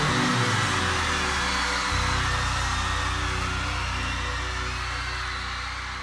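A live pop-rock band holds a sustained closing chord, the low bass note changing about two seconds in, over a crowd cheering. The whole sound slowly fades out.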